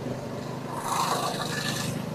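A soft hiss that swells about a second in and then fades, over a low steady hum: outdoor street background noise.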